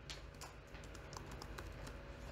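Faint computer keyboard typing: a quick run of key clicks as a word is typed.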